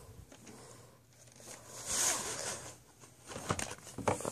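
Plastic VHS clamshell case handled and opened: a scraping rustle that peaks about two seconds in, then a few sharp clicks near the end.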